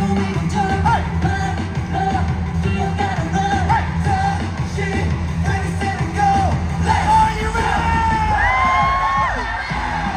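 Live K-pop performance through the arena's sound system, heard from among the audience: a pop track with a heavy bass beat and singing. Near the end, sliding high pitches rise over the music, together with fans yelling.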